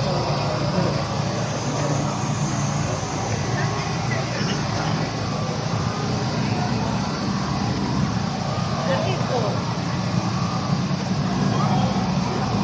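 Procession crowd murmuring, many voices talking at once with no single voice standing out, over a steady low hum.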